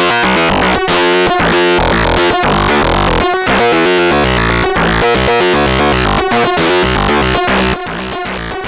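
Serge Paperface modular synthesizer: the NTO oscillator, randomly sequenced by the TKB and sent through the Wave Multipliers with its variable output modulated, playing a fast stream of stepped notes, several a second, rich in overtones. The level dips briefly near the end.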